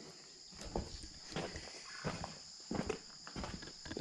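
Quiet, irregular footsteps and light knocks on a dirt barn floor, roughly one every half second or so, with a steady faint high-pitched tone underneath.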